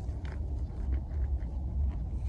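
Steady low rumble of wind on the microphone, with a few faint light clicks as fingers move small dug finds on foam in a plastic case.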